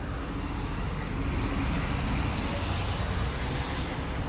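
Steady low drone of idling diesel truck engines, with a hiss of outdoor background over it.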